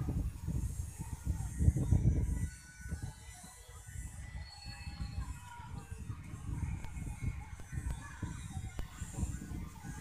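Wind buffeting the camera microphone: an uneven low rumble that rises and falls in gusts, loudest in the first two and a half seconds.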